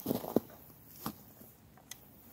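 Faint handling noise from a lever-action rifle being turned over in the hands: a few soft rustles and light knocks, about a second apart.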